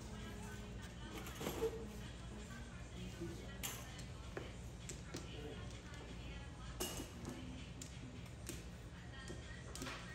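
Mahjong tiles clicking sharply against each other and on the table as players draw and discard, a few separate clacks, the loudest about one and a half seconds in. Low voices and music can be heard underneath.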